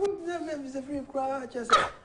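A person's voice in a long, drawn-out, wavering call that slowly falls in pitch. Several shorter notes follow, then a louder cry near the end.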